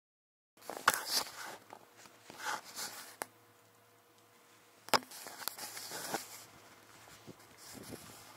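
Handling noises starting about half a second in: rustling, a few knocks and two sharp clicks, as someone moves about and handles the hoses and water container of a camping hot-water boiler.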